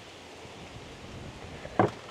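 Faint, steady outdoor background noise, with a brief vocal sound from a man near the end.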